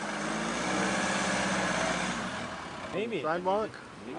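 A car engine running steadily, which fades away about two seconds in.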